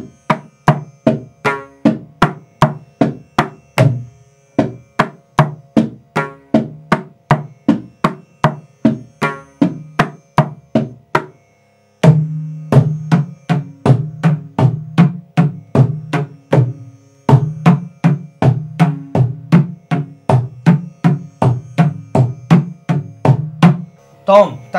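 Mridangam played by hand through a beginner's stroke exercise, the tenth lesson's pattern (tom, ta-ka, ta-ta, cha-ta, kita-taka), at a steady pace of about three strokes a second. Ringing strokes on the right-hand head sound over the deep bass of the left head. The playing cuts off abruptly just before halfway and resumes at once with a heavier bass.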